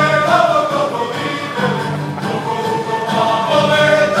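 Live Serbian folk music: a choir singing a folk song over the accompaniment of a folk orchestra, with a steady low drone underneath.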